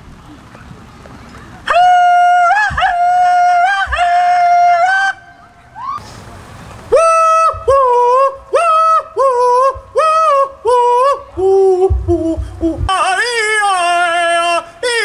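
A man hollering into a stage microphone in a high-pitched voice that flips between notes like a yodel, in the manner of traditional country hollering. First comes one long held holler, then after a short pause a string of short, quick whoops with a lower note near the end.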